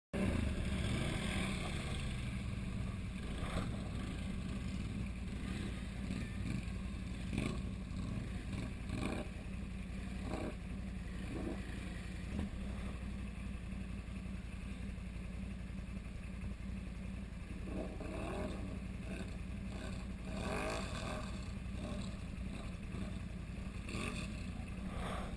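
An ATV engine idling steadily close by, with the engines of other ATVs revving now and then at a distance as they ride through deep water.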